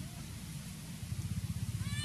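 A baby macaque giving a short, high, arching call near the end, over a steady low rumble that grows louder about a second in.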